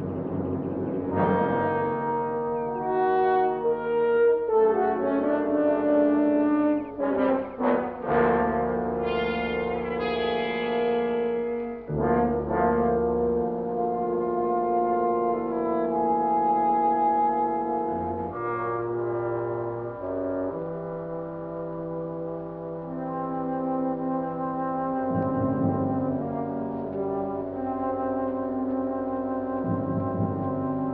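Dramatic orchestral score led by brass, with horns holding sustained chords that change every second or two. It has short, clipped notes about seven to eight seconds in and turns quieter in the second half.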